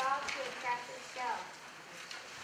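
A young child speaking in a high voice for about the first second and a half, then a short lull.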